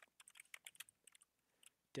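Faint typing on a computer keyboard: a quick run of keystrokes that stops about a second and a half in.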